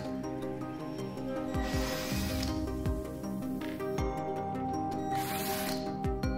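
Steady background music, with two short bursts of a cordless drill-driver spinning, one about two seconds in and one near the end, as it backs out screws from a copier drum unit's plastic housing.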